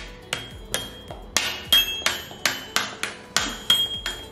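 A child's toy xylophone with coloured bars struck over and over with a mallet, about three even taps a second, each bar giving a short ringing note.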